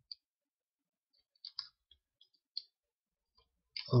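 A handful of short, sharp computer mouse clicks, spaced irregularly with silence between, as faces are clicked to select them in the modelling software.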